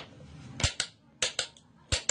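Hammer striking a metal chisel held against a curved wooden hoop: five sharp taps, mostly in quick pairs.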